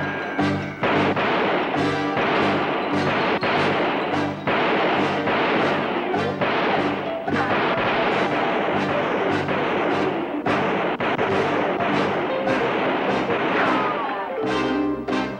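Gunfight: a rapid, irregular string of gunshots, about two a second, over dramatic film score music.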